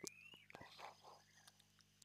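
Near silence in a pause between spoken phrases, with faint breath and mouth clicks in the first second.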